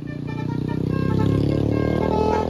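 Tour bus "telolet" multi-tone horn playing a melody of changing notes, over engine rumble that grows louder as the bus and passing motorcycles draw near.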